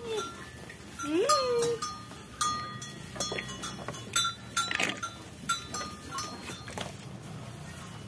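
Cowbells clinking irregularly, with one short rising-and-falling bleat from a young animal about a second in.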